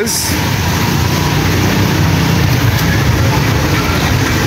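Street traffic: vehicle engines running and passing, a steady low rumble with no single event standing out.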